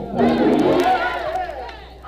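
Many voices of a church congregation raised together in shouts and song, swelling just after the start and fading toward the end.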